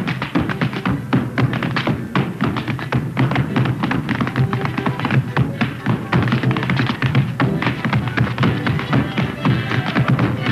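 Dance music with a steady beat, over the rhythmic steps of two men tap-dancing in hard shoes on a stage floor.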